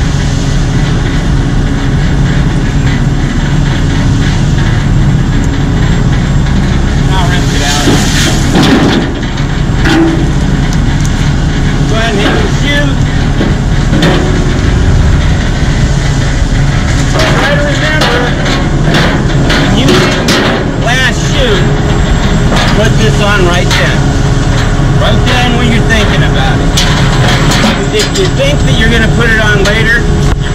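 Concrete mixer truck's diesel engine idling steadily, with scattered knocks and clanks as the metal washout bucket is handled and hung back on the truck.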